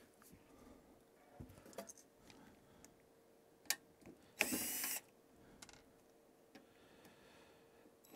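Cordless DeWalt drill-driver running in one short spurt of about half a second, about halfway through, backing out a self-tapping screw. Around it, faint clicks and handling knocks of the driver against the metal case.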